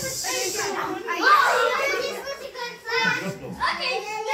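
Young children's voices in play, calling out and vocalising without clear words, with a hiss at the start and a loud rising-and-falling cry about a second in.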